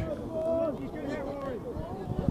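Faint, distant voices of footballers calling out across the pitch, with rising and falling shouts carrying from the field.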